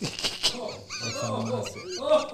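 Several people laughing and talking over one another, with high-pitched, wavering laughter and no clear words.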